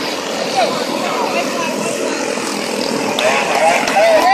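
Several quarter midget race cars' small Honda engines buzzing together as they lap the oval, a steady engine drone with spectators' voices faintly mixed in.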